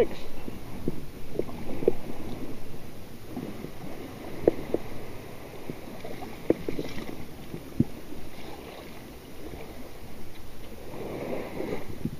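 Water splashing and dripping around a perforated metal sand scoop being worked and lifted in shallow water, with a scattering of short, sharp plops as water drains through its holes.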